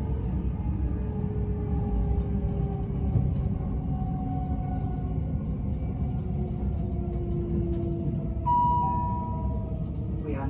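Bombardier Class 387 Electrostar electric multiple unit heard from inside a passenger coach: a steady rumble of wheels on track under a traction-motor whine whose pitch falls slowly as the train slows. Near the end a steadier, higher tone comes in suddenly.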